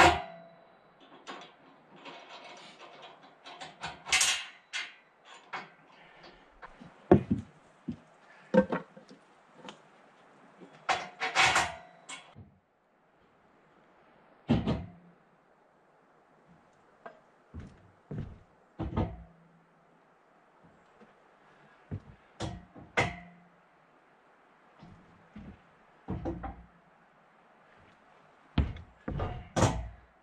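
Irregular metal clanks and knocks from the steel track frame of a Woodland Mills HM122 sawmill being fitted and adjusted by hand, with quiet gaps between them; the knocks come thicker in the first half.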